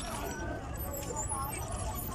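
Faint, untranscribed background voices over a steady low rumble.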